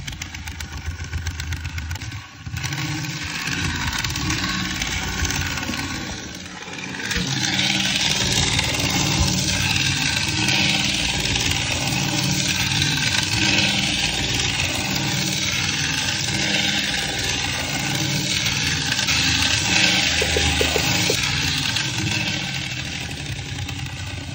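Bachmann N scale Brill trolley running on its track: the small electric motor and worm drive whir steadily, together with its wheels rolling on the rails. It gets louder from about seven seconds in, with two brief dips before that.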